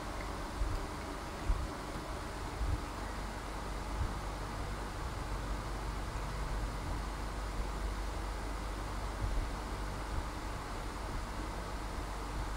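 Steady room background noise: a low hum under an even hiss, with a few faint soft bumps in the first three seconds.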